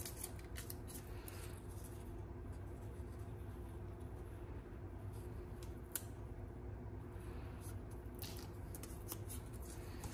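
Faint handling of folded cardstock and double-sided adhesive tape as the tape is pressed onto the paper: a few soft, short clicks and crackles over a low steady hum.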